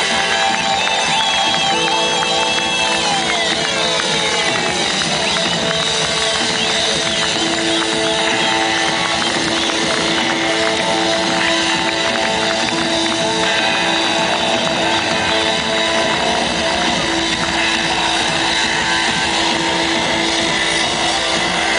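Live pop-rock band playing an instrumental passage, with a keytar and guitars over a steady loud mix. Sustained keyboard notes are held, and falling pitch glides come a few seconds in.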